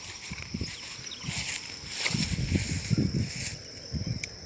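Light clicks and rustles of lures and tackle being handled in an open plastic tackle box, over low wind rumble and a thin, steady high insect tone.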